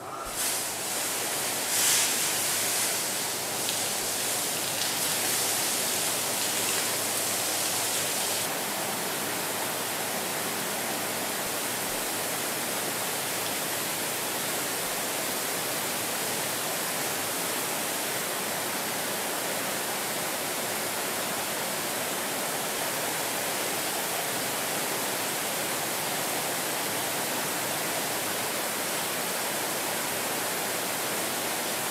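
Banks of water spray nozzles drenching a car body in a water-leak test booth, a steady hiss of spray and water drumming on the bodywork. It starts suddenly, is a little louder for the first several seconds, then settles steady.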